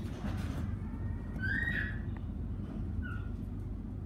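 Inside a moving commuter train: the steady low rumble of the train running, with a short high-pitched squeak about a second and a half in and a shorter, fainter one about three seconds in.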